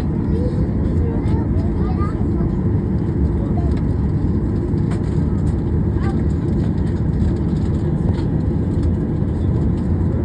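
Steady low rumble inside the cabin of a Boeing 737 jet airliner taxiing after landing, with faint passenger voices underneath.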